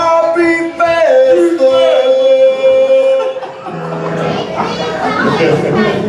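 Two men's voices singing a short unaccompanied phrase, holding long notes together in harmony for about three seconds, then trailing off into talk and laughter.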